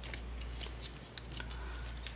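Small plastic clicks and rubbing from a transforming robot toy's joints and parts as it is twisted and snapped through its transformation by hand, a quick irregular run of ticks over a low steady hum.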